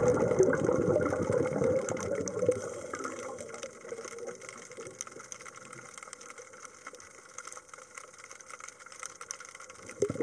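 Underwater noise of water moving and gurgling around the camera, loudest for the first couple of seconds and then fading to a faint hiss.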